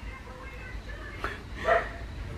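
A dog barking faintly, two short barks in the second half.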